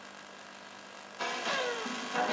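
A vintage black-and-white TV's loudspeaker gives a low steady hiss while the channel changes. About a second in, cartoon soundtrack music starts, opening with a falling swoop.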